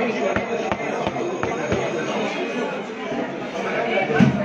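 Indistinct chatter of many people talking at once, steady throughout, with a few light clicks in the first half.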